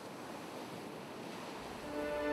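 Soft, steady rushing of sea waves and wind.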